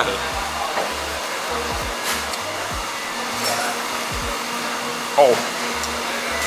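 A steady rushing noise runs throughout, with a bass line of background music beneath it. A short voice exclamation comes about five seconds in.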